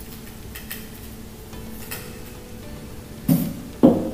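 Crushed ice tipped from a metal scoop onto a cocktail in a tall glass, with faint brief rattles, then two dull thumps near the end as the glass is set down on the bar counter.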